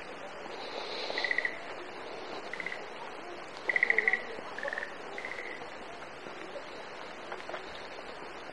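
Short, rapidly pulsed trilling calls from a small animal, five brief bursts in the first half, the loudest about four seconds in, over a steady outdoor background hiss.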